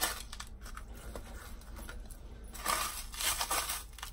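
Dry seasoning of salt, black pepper and crushed red chili being pinched from a small bowl and sprinkled by hand over a raw chicken in a steel tray: short soft rustling stretches, the loudest from about two and a half seconds in to near the end.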